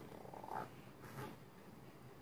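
A child's faint, low straining grunts, twice, while forcing a heavy ice cream scoop into stiff cookie dough.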